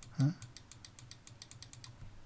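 Typing on a computer keyboard: a quick, fairly even run of about a dozen key clicks lasting over a second.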